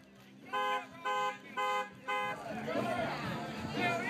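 Car alarm sounding the horn: four short, evenly spaced honks about half a second apart, followed by several people talking.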